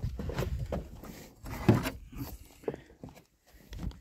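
Footsteps and the rustle of aguapé (water hyacinth) stems and leaves being pushed through, with irregular scuffs and knocks and one louder thump a little before halfway.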